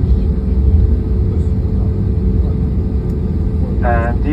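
Jet airliner cabin noise while taxiing: the engines at idle give a steady low rumble with a faint even hum, heard from inside the cabin.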